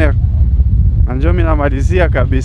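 A man's voice speaks briefly about a second in over a loud, uneven low rumble of wind on the microphone and engine noise from a moving motorcycle.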